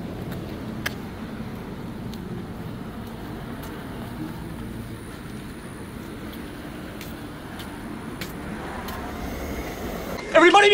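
Steady low rumble of road traffic, with a few sharp clicks scattered through it, the strongest about a second in.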